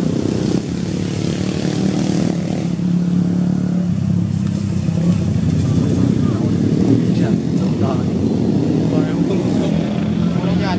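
A motor running steadily with a low, even hum throughout.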